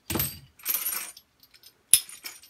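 Small chrome-plated metal hardware clinking and jangling as the pieces are handled in a plastic sifter bowl and set down on the bench, in a few short clatters with a sharp click near the end.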